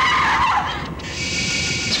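A loud, harsh screeching horror-film sound effect that slides down in pitch over the first half second, then carries on as a hissing drone.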